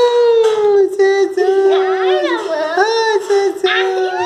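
Small dog, a pinscher, howling in long, high, whining cries that waver in pitch and dip then rise again about halfway through.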